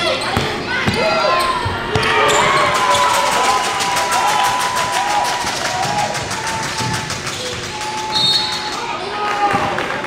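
A basketball bouncing on a hardwood court as it is dribbled, with players and people courtside shouting.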